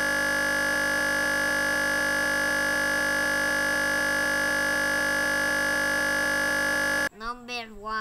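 Crash buzz from a Windows XP virtual machine: the sound buffer loops a tiny fragment of the audio that was playing, making a steady, harsh, unchanging buzz. It cuts off suddenly about seven seconds in, and speech follows.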